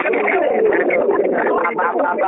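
A man speaking without a pause.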